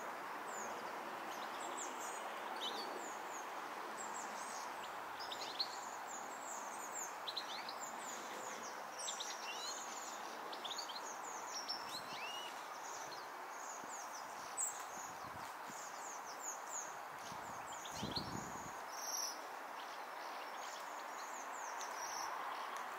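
High, thin calls of a flock of Bohemian waxwings, many short notes close together throughout, over a steady background rumble. A low, dull thud sounds once, late on.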